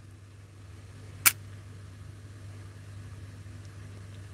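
A pause in the talk: a steady low hum under faint background noise, with one short sharp click about a second in.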